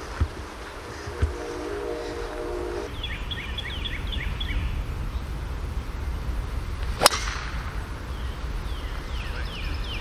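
A golf driver strikes a ball off the tee once, a single sharp crack about seven seconds in. Birds chirp in short falling notes before and after it.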